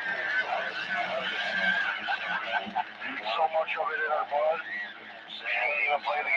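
Voice transmissions on AM CB channel 17, coming through the Ranger 2995DX base station's speaker with static and hiss and too garbled to make out words.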